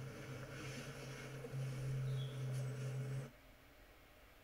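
A steady low hum or drone, the background sound of the music video's street scene, with no speech over it; it cuts off suddenly about three seconds in.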